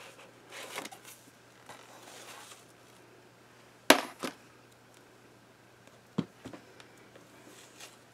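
Hand rubbing over the back of a gel plate mounted on an acrylic block, pressed onto a journal page: two soft brushing stretches. Then a sharp hard clack about four seconds in, the loudest sound, with a smaller one just after, and two duller knocks around six seconds in, as the acrylic-backed plate is handled and set down.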